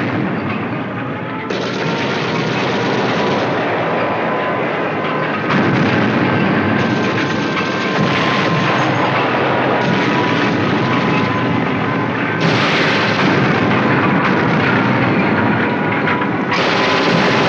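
Loud, dense thrash metal music: distorted electric guitars and drums at full band volume.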